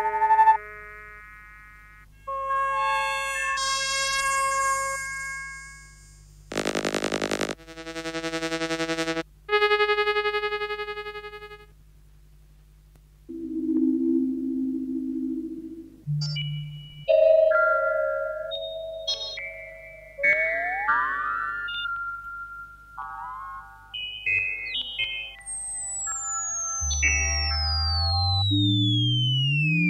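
1956 electronic tape music built from oscillator tones. Held electronic tones rich in overtones sound a second or two each with short gaps between them, and a dense buzzing pulsed tone comes about seven seconds in. Later, quicker short tone fragments and pitch glides follow, ending in a long falling glide, all over a low steady hum.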